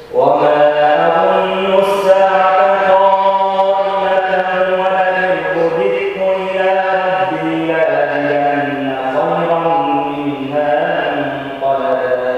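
A man's voice chanting Quran recitation in Arabic. One long melodic phrase begins sharply and tapers off near the end, its pitch stepping slowly between a few held notes.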